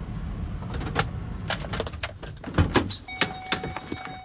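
Chevrolet work van: a low engine rumble in the cabin, then a quick run of clicks and key jingling as the engine is shut off and the driver's door is opened. From about three seconds in, a steady high warning tone sounds.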